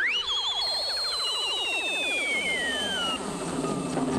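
Whistling film sound effect of a mighty blast of breath: a shrill whistle swoops up at the start, then slides slowly down for about three seconds over a falling sweep of lower tones.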